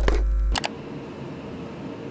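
Phone microphone handling noise: a few sharp clicks over a heavy low rumble, lasting about half a second. After that, a steady background hiss with a faint hum continues at a lower level.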